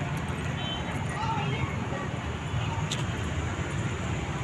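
Outdoor background noise: a steady low rumble with faint, indistinct voices, and a brief click about three seconds in.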